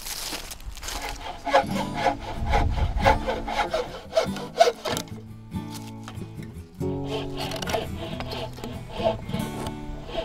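Wooden frame saw cutting through a squared timber beam in repeated back-and-forth strokes, over background music with sustained notes.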